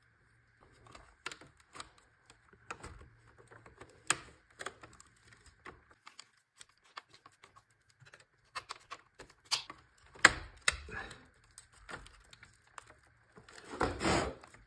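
Irregular small clicks and ticks of plastic and metal as hands handle wires and modular breakers on the DIN rail of an electrical distribution panel, with a denser, louder run of clicks about ten seconds in.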